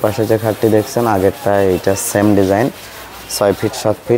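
A man's voice talking in short running phrases, with a brief pause about three seconds in.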